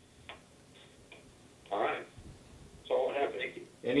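A quiet pause in a press conference, broken by a single click and a short breathy noise. Near the end a man's voice comes in over a telephone line.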